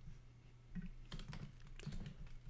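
Computer keyboard keystrokes, a short run of quiet clicks in the second half, as a line of code is entered. A faint low hum runs underneath.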